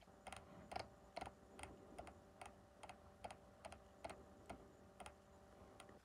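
Faint clicking at a computer, evenly spaced at about two to three clicks a second.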